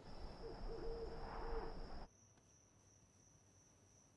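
Night ambience: a low rumble with an owl hooting several times, which cuts off abruptly about two seconds in, leaving a faint quiet hush.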